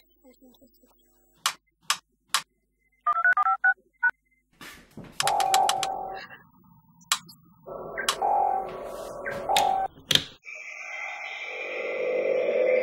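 Sci-fi control-console sound effects: three sharp clicks, a quick run of short electronic beeps like keypad tones, then louder electronic bleeps and whirs. A steady electronic hum comes in near the end.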